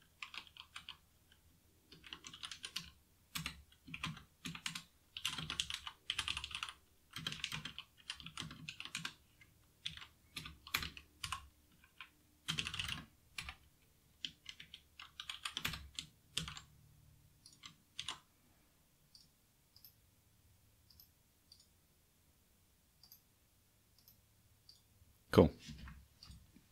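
Typing on a computer keyboard in irregular bursts of keystrokes. The typing is busy through most of the first two-thirds, then thins to occasional single key clicks.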